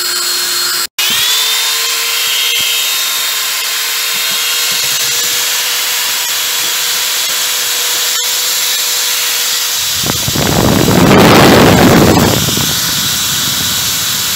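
Electric drill fitted with a paint-mixer paddle, running steadily with a constant whine as it churns a pot of thick haleem: the ghotna step that blends the cooked wheat, lentils and meat into a smooth, stringy paste. The whine cuts out for a moment about a second in, then returns, rising to a higher steady pitch. Near the end a louder, rough noise swells up for about two seconds.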